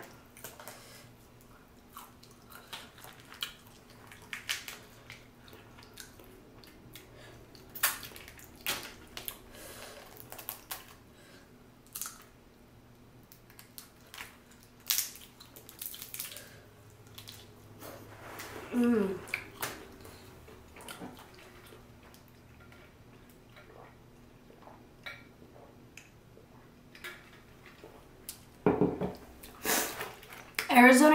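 Boiled crawfish being cracked, peeled and eaten by hand: scattered sharp shell cracks and clicks with wet sucking and chewing. A short falling hum of a voice comes about two-thirds of the way through.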